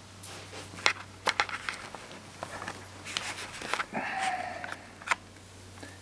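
Scattered light clicks and rustles from hands handling the camera and the syringe, over a low steady hum.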